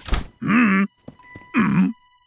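A short thunk, then two brief wordless vocal sounds from a cartoon character, each under half a second, the pitch rising then falling.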